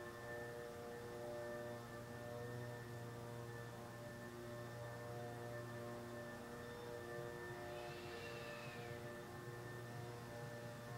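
Faint steady drone of several sustained tones at fixed pitches over a low hum. A brief high tone rises and falls about eight seconds in.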